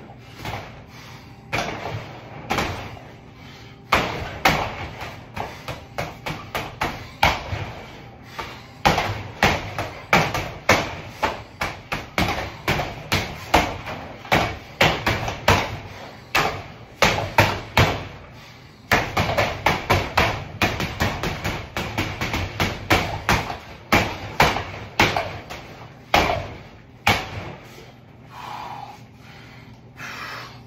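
Boxing gloves punching a hanging heavy bag: flurries of thuds, two to four punches a second, broken by short pauses of a second or so.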